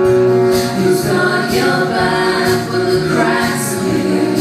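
Live trio music: a held sung line over instruments, with a light percussive tick about once a second.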